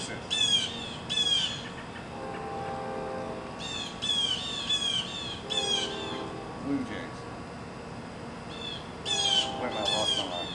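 A bird giving harsh, downward-sliding squawking calls in runs: two near the start, five in quick succession about four seconds in, and three more near the end.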